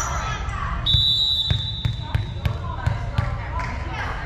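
Volleyball bounced repeatedly on a hardwood gym floor, about three bounces a second, as the server readies to serve. A long, high whistle blast, the referee's signal to serve, comes about a second in, with voices chattering in the gym.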